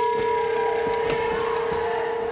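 Wrestling ring bell ringing on after being struck: one clear metallic tone with overtones, slowly fading.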